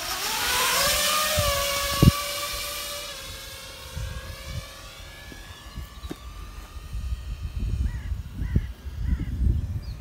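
A small FPV racing quadcopter's motors spool up for takeoff, a whine rising in pitch over the first second. The whine holds, then fades and drops in pitch as the quad flies off. A sharp click comes about two seconds in, and gusty wind rumbles on the microphone in the later seconds.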